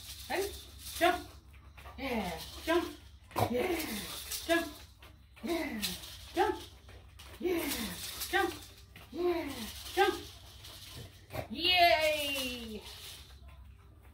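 A dog vocalizing in short whining yelps, each one sliding down in pitch, roughly one a second. Near the end comes one longer, wavering whine.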